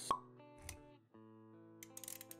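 Animated-intro sound design: a sharp pop effect right at the start, over quiet background music with held notes. A soft low thud about halfway through, with a few light clicks near the end.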